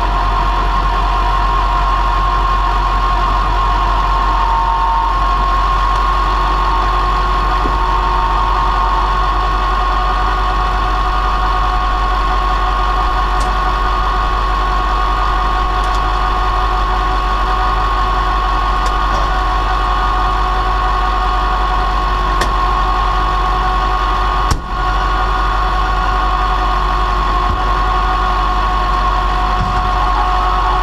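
Flatbed tow truck running at a steady speed while its winch drive pulls a wrecked SUV up onto the bed, with a steady high whine over the engine. A single short knock about three-quarters of the way through.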